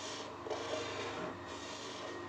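A pen scratching across drawing paper as a line is drawn along the edge of a ruler, a soft continuous rubbing.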